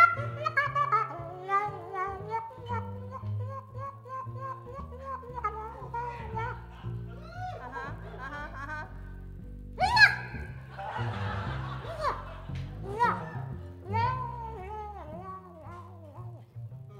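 A harmonica plays a jazz melody live over upright bass and band accompaniment. About ten seconds in there is a sudden loud burst, then a second or two of noisy sound, before the playing goes on.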